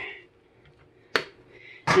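A single sharp clack of kitchenware being set down, about a second in.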